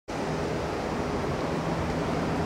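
Steady outdoor background noise: an even rumbling hiss with a faint low steady hum in it, and no single event standing out.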